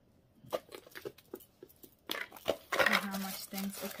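Small items being handled and put into a small leather handbag: a few light clicks and knocks, then about a second of rustling handling noise.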